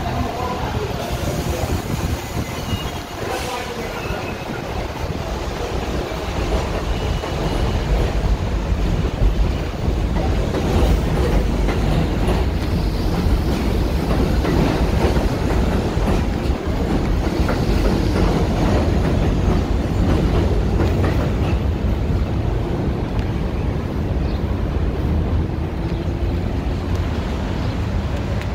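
A New York City subway train running on the elevated Astoria line structure overhead: a heavy, steady rumble that builds about six seconds in and keeps going.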